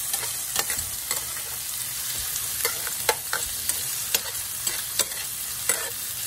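Shrimp and chopped garlic sizzling in hot oil in a frying pan, stirred with a metal spoon that scrapes and knocks against the pan about once a second.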